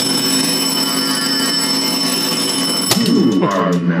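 Williams Sorcerer pinball machine's bell ringing steadily, then cutting off suddenly with a click about three seconds in.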